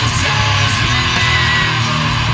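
Loud, dense guitar rock music playing without a break.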